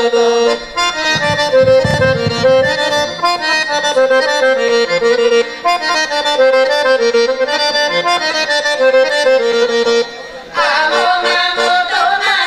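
An accordion plays a brisk Bulgarian folk melody as an instrumental interlude. About ten seconds in it pauses briefly, and the women's folk group comes back in singing.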